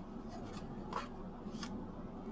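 A large plastic stencil sheet is handled and laid flat on a cutting mat, making a few soft crinkles and light taps. The clearest one comes about a second in.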